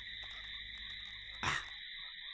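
A faint, steady night chorus of calling animals, a continuous high chirring. About one and a half seconds in a short vocal sound breaks in, and just after it the chorus cuts off abruptly.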